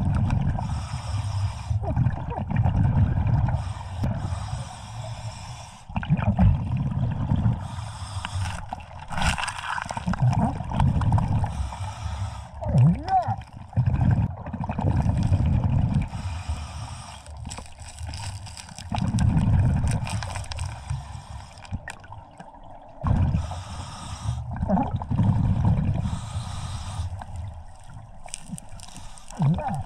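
Scuba regulator breathing heard underwater: a hiss on each inhalation alternating with a low gurgle of exhaled bubbles, in a cycle every few seconds, with a few sharp clicks of rock being handled.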